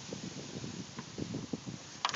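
Wind on the microphone: a steady rough hiss, with a faint click about a second in.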